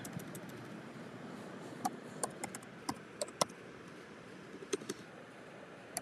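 Computer keyboard typing: a slow, uneven run of faint key clicks as a word is typed.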